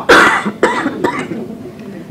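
A woman coughing: one loud cough just after the start, then two smaller ones within about a second.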